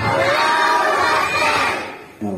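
A crowd of children's voices raised together in one loud, drawn-out call that lasts almost two seconds and fades out near the end.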